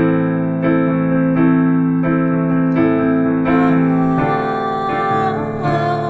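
Piano playing chords from the song's repeating progression (F, A minor, D minor, B-flat major seventh, B-flat minor), both hands striking a fresh chord about every two-thirds of a second and letting it ring.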